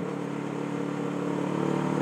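Motorcycle engine running at a steady note under way, with wind and road noise, growing slightly louder through the two seconds.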